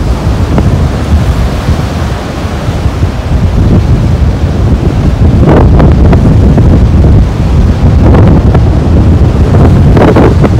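Strong wind buffeting the microphone on an open beach, a loud rumble that gets louder about halfway through, with surf breaking behind it.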